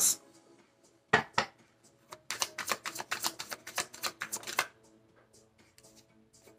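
A tarot deck being shuffled by hand: two card taps about a second in, then a quick run of card clicks for about two and a half seconds, with soft background music underneath.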